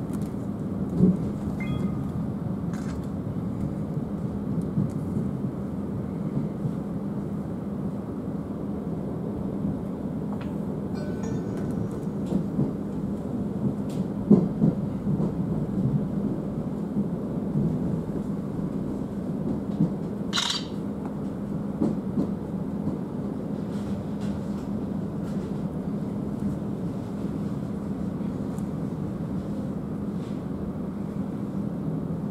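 Interior noise of a Thameslink Class 700 (Siemens Desiro City) electric multiple unit on the move, heard inside the carriage: a steady low rumble with a hum and a few light knocks from the wheels on the track. A brief high-pitched squeak about twenty seconds in, as the train draws into a station.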